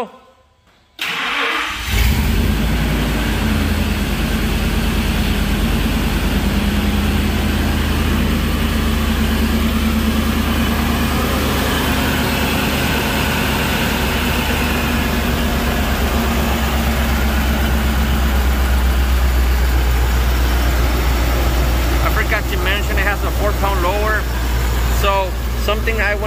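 Ford SVT Lightning's supercharged 5.4-litre V8 cranking briefly and catching about a second or two in, then idling steadily. The idle is pretty good now, despite known low compression on the passenger-side cylinders.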